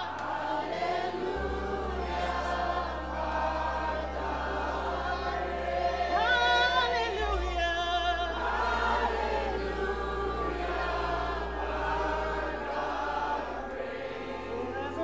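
A group of voices singing a worship song together in harmony, some with vibrato, over a sustained low bass note that comes in about a second in and shifts pitch about halfway through.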